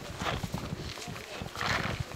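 Footsteps crunching and scuffing in snow, irregular, with a short hiss near the end.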